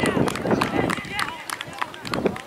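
Players shouting and calling out on a grass football pitch, over a scatter of sharp taps and clicks.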